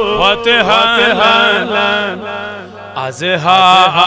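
A man's voice chanting a devotional naat in a drawn-out, melodic recitation, with a short break about two and a half seconds in.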